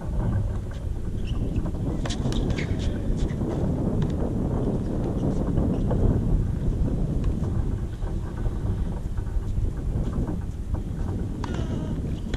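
Wind buffeting the microphone: a steady low rumble, with a few faint clicks and short chirps about two to three seconds in.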